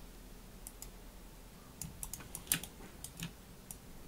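Scattered clicks of a computer keyboard and mouse, about a dozen irregular taps, the loudest about two and a half seconds in.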